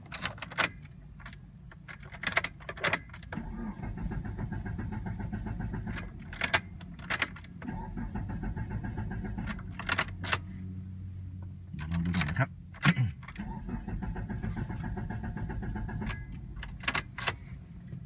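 A car engine started with a freshly cloned chip 46 transponder key, then idling steadily, with the key fob jangling and sharp clicks at the ignition. The engine keeps running, a sign that the immobilizer accepts the cloned key. The engine sound swells briefly about twelve seconds in.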